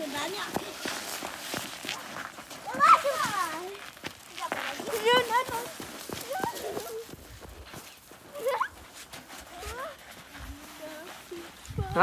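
Young children's voices: a few short high-pitched shouts and squeals with swooping pitch, over light footsteps in snow.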